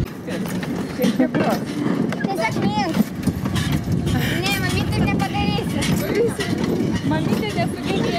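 A rail handcar rolling along a track, its wheels rattling and clicking on the rails. People's voices and laughter sound over it.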